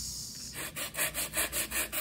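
Sandpaper stick rubbed quickly back and forth across the front end of a model plane's fuselage, leveling the front face. Even, rapid scraping strokes, about five a second, start about half a second in.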